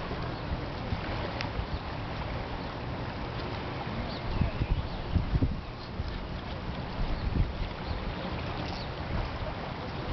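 Wind buffeting the microphone in uneven low gusts, strongest about four to five and a half seconds in and again at about seven and a half seconds, over a steady rushing background.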